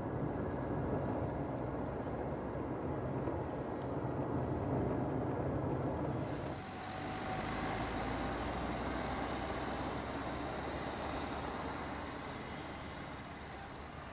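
Suzuki Swift hatchback driving: a steady low road-and-engine rumble heard from inside the cabin. About six and a half seconds in it changes to the car heard from outside, with more tyre hiss, and it slowly fades as the car moves away.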